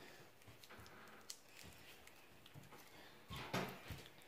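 Faint crinkling and soft clicks of a plastic Warheads sour candy wrapper being picked open by hand, with a brief louder rustle near the end.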